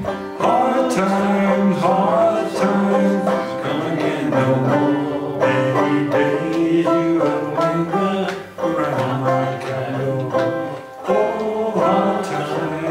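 A man singing a slow folk song, accompanying himself on a banjo with steady plucked strokes.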